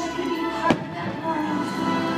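Fireworks show with its soundtrack music playing steadily, and one sharp firework bang a little after half a second in.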